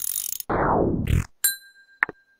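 Computer sound effects from an online function-machine app processing an input: a rushing noise, then a bright bell-like ding about one and a half seconds in that rings on as the output value appears.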